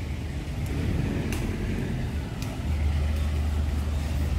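Low rumble of road traffic outdoors with a few faint ticks, growing a little louder over the last second or so.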